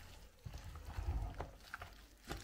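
Wooden spoon stirring wet grated apple with dry ingredients and cinnamon in a bowl: moist squelching and shuffling, with a few short knocks of the spoon against the bowl.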